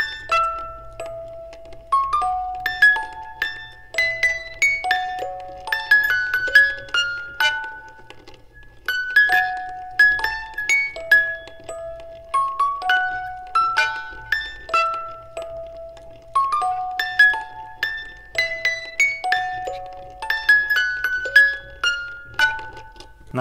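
Music box playing a short tune of bright plucked notes, the melody coming round again about every nine seconds.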